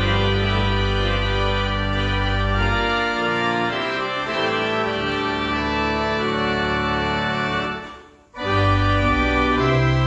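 Church organ playing sustained full chords over deep pedal bass notes. The bass drops out about three seconds in. The music breaks off for a moment about eight seconds in, then resumes with a loud chord and bass.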